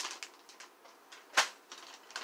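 Clear plastic parts bags holding plastic kit sprues crinkling and rustling as they are handled, with one sharp click or tap about one and a half seconds in.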